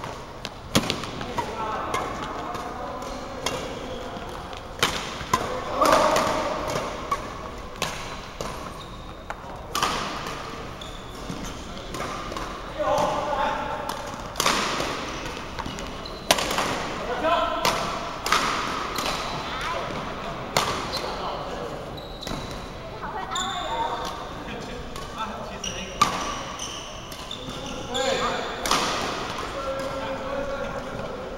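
Badminton rally: rackets striking a shuttlecock in sharp, irregular cracks about once a second, back and forth across the net.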